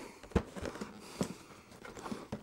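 A cardboard router box being handled and turned over in the hands: a few soft knocks and rubs of cardboard, the clearest about a third of a second in and just past a second.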